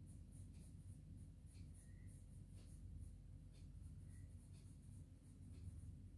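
Faint scratching of an HB graphite pencil shading on sketchbook paper, in quick, short, repeated strokes.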